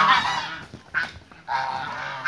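Flock of domestic geese honking: loud overlapping calls at the start that fade out, a short lull with a single brief call in the middle, then honking picks up again near the end.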